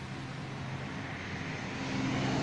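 Steady background noise: a low hum under a soft hiss, growing slightly louder near the end.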